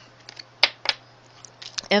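A few short, sharp clicks against quiet room tone: one clear click about half a second in, another just before the one-second mark, and a couple more near the end.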